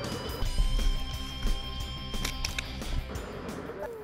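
Background music with a steady beat and held high notes.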